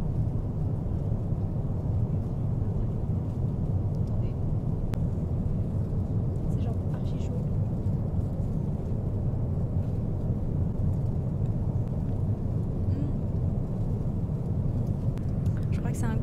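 Steady low drone of an airliner cabin in flight, with a few faint, brief clicks near the middle.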